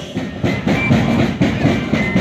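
Moseñada band music: a chorus of breathy moseño cane flutes with drums, dense and noisy, with sharp drum strokes running through it.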